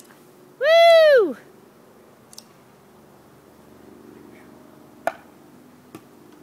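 A person's high whooping "woo!" about a second in, rising and falling in pitch, over the faint steady hum of a honeybee swarm. A single sharp knock about five seconds in.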